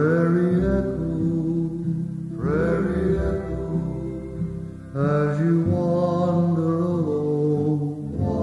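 Instrumental break of a slow country-western song: a violin plays the melody in three long held phrases, each sliding up into its first note, over guitar accompaniment.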